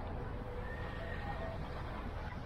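Steady low rumble of a car driving slowly on a wet street, with a faint thin high squeal lasting about a second in the middle.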